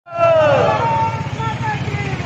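Several voices shouting in long, falling calls that overlap, over a steady low engine rumble.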